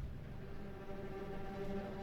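Background score: a soft held chord of several steady low tones fading in at the start and sustained.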